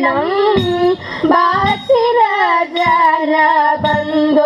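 Girls' voices singing a Malayalam song through a PA, the accompaniment to a Thiruvathira group dance, with a few sharp hand claps along with it.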